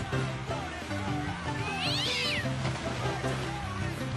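Background music with a cat meowing over it, and a sharp, high cry about two seconds in.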